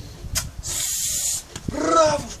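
A pit bull hanging by its jaws from a rope lets out one hard hissing breath through its nose, lasting under a second. A man's voice starts calling near the end.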